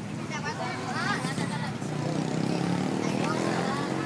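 Children and adults talking and calling out at once, over a steady low hum.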